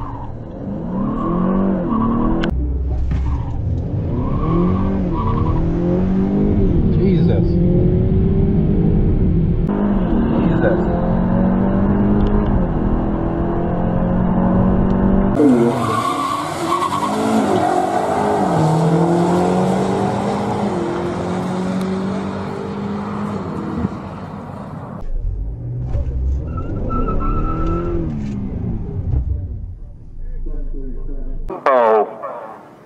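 Honda Accord Sport 2.0T's turbocharged four-cylinder accelerating flat out down a drag strip through its 10-speed automatic: the engine note climbs, then drops at each quick upshift, again and again. Later the run is heard again from trackside, with the Accord and a BMW M5 Competition launching side by side.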